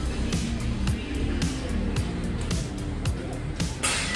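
Background music with a steady drum beat and a bass line.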